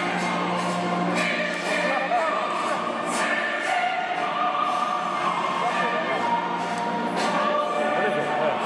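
Choral music with singing voices, played loud and heard in a large theatre hall.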